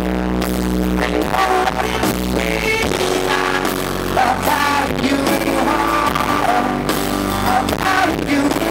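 Live pop-rock band music: a male lead voice singing over strummed acoustic guitar, bass and drums.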